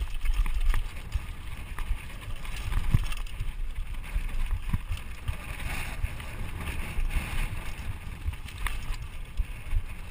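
Mountain bike descending a dry, rocky dirt trail: tyres rumbling over the ground and wind buffeting the camera microphone, with frequent clicks and rattles from the bike.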